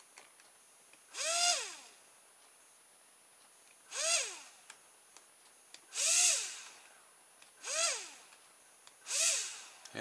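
Small toy electric motor with a plastic propeller, run through a toy RC car's receiver, whirring up and back down in five short bursts as the transmitter is worked. Each burst rises in pitch and then falls away. The receiver is driving the motor both ways, push and pull.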